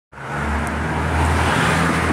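Road traffic: a nearby motor vehicle's engine running, a steady low hum under a broad wash of road noise.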